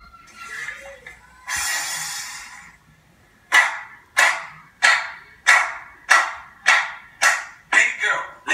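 Hand claps in a steady rhythm, about one every 0.6 seconds, each with a short ringing tail; the clapping starts about three and a half seconds in. Earlier, about a second and a half in, a rushing noise lasts about a second.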